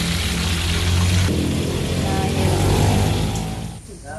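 Tofu deep-frying in oil in a wok, a steady sizzling hiss that thins a little over a second in, over a low steady hum. The sound fades near the end.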